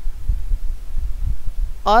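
Low rumble with soft, irregular thumps under a pause in the narration; a woman's voice comes back in just at the end.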